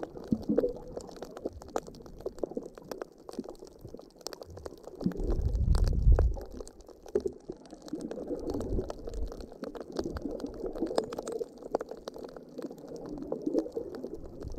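Underwater sound picked up by a camera moving in shallow water: water gurgling and sloshing against the camera, with many scattered sharp clicks. About five seconds in, a louder low rumble lasts for about a second.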